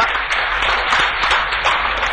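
Audience applauding: dense, steady clapping from a roomful of people.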